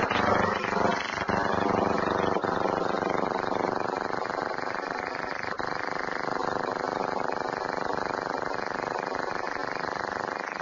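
Laser-propelled lightcraft in powered flight. The CO2 laser's pulses, 25–28 a second, set off blasts of superheated air and plastic ablative propellant under the craft, and these merge into a steady buzz.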